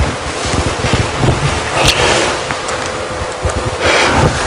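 Rushing, rumbling noise on the microphone, like breath or wind blowing across it, with a short crackle about two seconds in.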